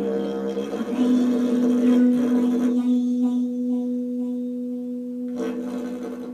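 Live drone music: a steady held note with its octave above, which settles in about a second in after a busier opening. It comes from a small band with a long didgeridoo-like tube and a keyboard.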